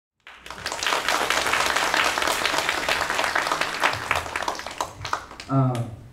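Audience applauding: many hands clapping, thinning out near the end, followed by a short spoken word.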